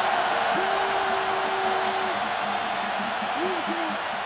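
Large indoor stadium crowd cheering in a dense, steady roar. A few voices yell over it, one held for about a second and a half.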